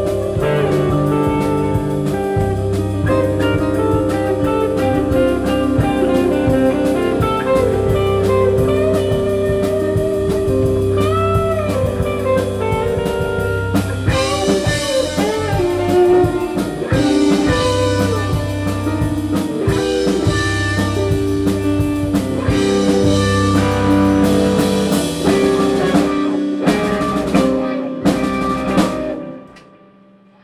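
Live band playing: electric guitars, bass guitar, drum kit and keyboard, with the cymbals heavier from about halfway. Near the end the band hits a few short stop-time accents, then the song ends on a final hit and cuts off.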